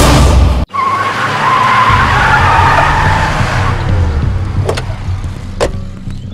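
Film music cut off abruptly, followed by a vehicle-like rushing sound with a wavering squeal that fades over a few seconds, then a few sharp knocks near the end.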